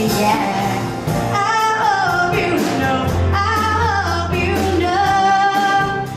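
A woman singing live into a handheld microphone, backed by a band with drums. Her phrases glide up and down, and she holds one long wavering note near the end.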